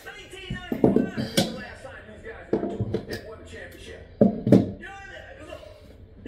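A man's voice, broken by about five sharp knocks, the loudest about one and a half seconds in and about four and a half seconds in.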